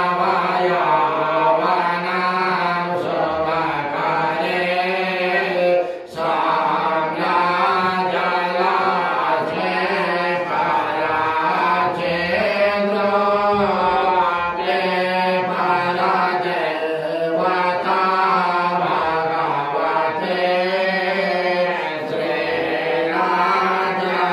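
A Hindu priest chanting Sanskrit puja mantras into a microphone in a continuous melodic recitation, with one brief break about six seconds in.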